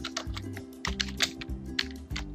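Computer keyboard being typed on, a quick run of keystrokes spelling out a word, over background music with low held notes.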